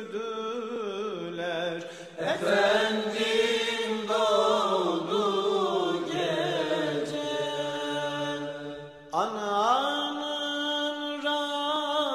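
A slow, ornamented religious chant sung by a single voice, with new phrases beginning about two seconds in and about nine seconds in, the second sliding up in pitch at its start.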